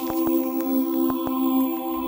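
Electronic TV-channel ident music: a held synthesizer drone chord of a few steady tones, crossed by irregular short glitchy clicks.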